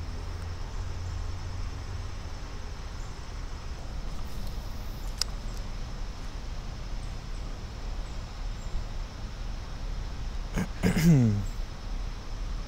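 Quiet outdoor background with a low rumble, a single sharp click about five seconds in, and a short wordless man's voice sound falling in pitch near the end.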